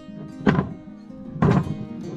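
Two heavy wooden thunks about a second apart as short logs are dropped onto the plywood bed of a Makita carrier, over background music.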